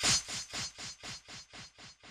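A raspy, scratchy sound effect pulsing about four times a second, loudest at the start and gradually fading away.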